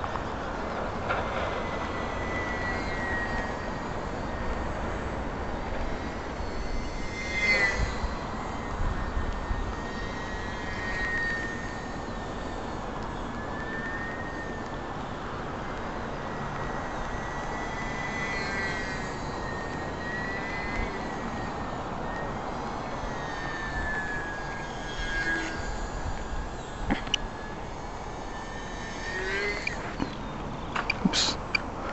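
Small electric RC airplane motor with a high whine that wavers up and down in pitch as the throttle changes, over a steady rush of wind. A few sharp clicks come near the end.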